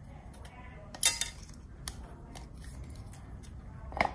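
Handling of an LG V20 smartphone and its removed metal back cover on a table: a sharp clatter of clicks about a second in, then a few lighter taps.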